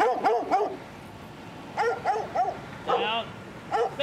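A dog barking in short runs of three or four barks, with a higher, wavering yelp about three seconds in and a single bark near the end.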